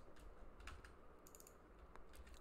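Near silence with a few faint computer keyboard clicks, a small cluster of them a little past halfway.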